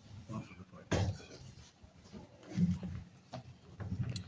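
Brief, indistinct low voices in a small room, twice, with a few sharp knocks and clicks of the recording phone being handled.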